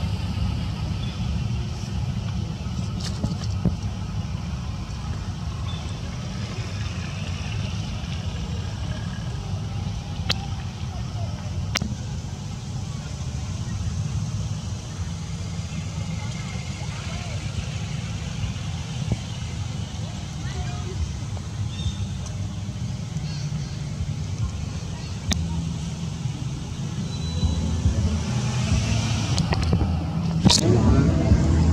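Steady low rumble of background noise, with a few faint sharp clicks scattered through it.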